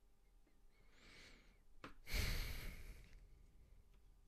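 A person breathes in, then lets out a heavy sigh close to the microphone about two seconds in, with a small click just before it.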